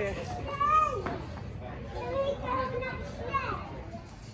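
Background voices of other people, with a child's high-pitched voice calling out about half a second in and further talking after it.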